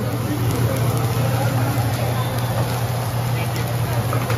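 Busy hibachi-restaurant dining-room ambience: a steady low hum under indistinct chatter from the surrounding tables.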